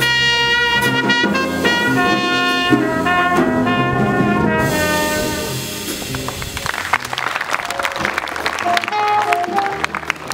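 Live jazz combo with a trumpet playing a solo line over electric bass, drum kit and keyboard. About halfway through the trumpet line fades and the music drops in level, leaving mostly drums and cymbals with a few short notes.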